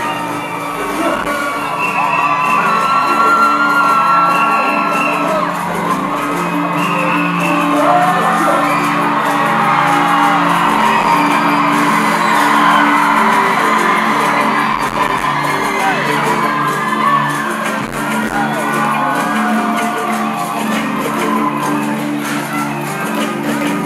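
Live band music with singing, steady and loud throughout, with voices whooping and shouting over it.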